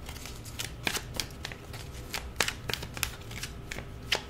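Tarot cards being handled and drawn from a deck onto a cloth-covered table: a string of light, irregular clicks and slides of card stock.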